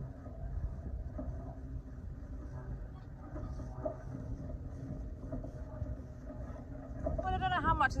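Wind buffeting the microphone outdoors, a steady low rumble, with a woman starting to speak near the end.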